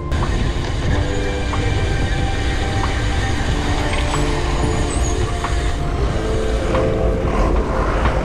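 Road traffic on a busy town street heard from a moving bicycle: a loud, steady noise with heavy low rumble, with background music continuing underneath.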